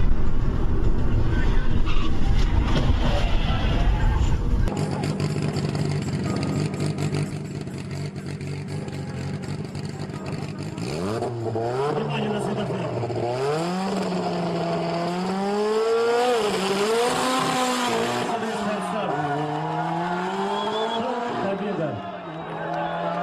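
ZAZ Zaporozhets engine revving hard and accelerating from a drag-race launch, its pitch climbing and dropping several times through gear changes. Before that comes a heavy low rumble of wind and road noise, which cuts off suddenly about five seconds in.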